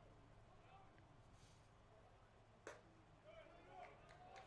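Near silence: faint open-air ballpark ambience with a low hum, one sharp click a little past halfway, and faint distant voices near the end.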